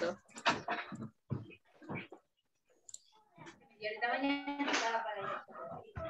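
A voice over a video call breaking up into short fragments with gaps, then a longer stretch of speech about four seconds in. The audio cuts in and out because of a slow internet connection.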